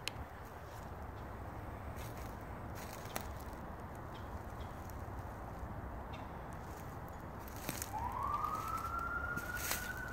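A steady low background rumble with a few faint footfalls on dry leaves. About eight seconds in, an emergency-vehicle siren rises in pitch and then holds its tone.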